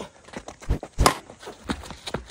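A few short, sharp taps and thumps, the two loudest close together near the middle.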